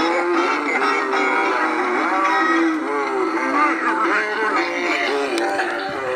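Animated singing Santa figures playing a recorded song through their small built-in speakers: electronic-sounding singing over music, thin with no bass.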